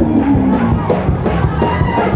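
Gospel choir singing with a band behind it, a drum kit keeping a steady beat.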